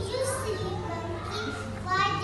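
Young children's voices chattering, several at once, with no clear words.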